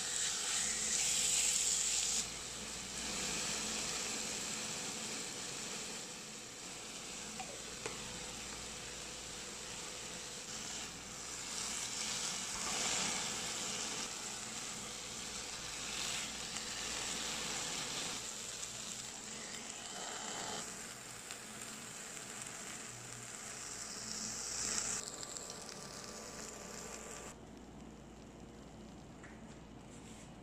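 Sliced chicken breast sizzling as it fries in a flat pan, with swells in the sizzle now and then as the pieces are stirred with a silicone spatula. The sizzle slowly gets quieter as the chicken cooks through.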